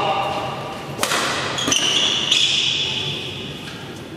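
A sharp crack of a badminton racket striking the shuttlecock about a second in, ringing briefly in a large hall, followed by court shoes squeaking on the floor for over a second as the players move.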